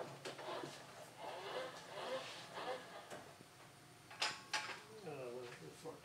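Etching press bed being run a little further under the roller, a soft sliding rumble under murmured voices, with two sharp clicks a fraction of a second apart about four seconds in.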